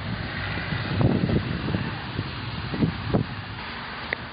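Wind and handling noise rumbling on a phone microphone, with a few soft footfalls on dry grass and earth.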